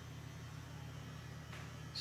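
Faint, steady low hum over quiet room tone.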